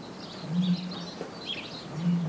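Ostrich booming call: a very dull, deep hoot lasting about half a second a third of the way in, with another beginning near the end. Small birds chirp faintly throughout.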